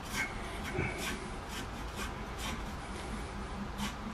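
Steel wire saw drawn back and forth through PVC pipe, a soft rubbing rasp with several faint strokes. The wire cuts by friction heat, melting the plastic, and is close to finishing the cut.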